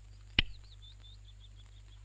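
A wall light switch clicks once, sharply, about half a second in. Right after it comes a quick run of high, wavering chirps that drift slightly down in pitch for about a second and a half, over a steady low hum.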